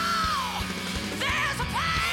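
A woman's loud, raw rock vocal over a live rock band with drums and electric guitar. She holds a high note that falls away in the first half second, then sings short, rising phrases in the second half, over a steady kick-drum beat.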